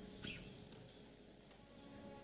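Near silence, with faint sustained keyboard tones that fade and come back, and a brief soft rustle about a quarter second in.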